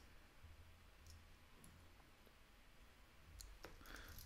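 Near silence: room tone with a low hum and a few faint, sparse computer keyboard key clicks.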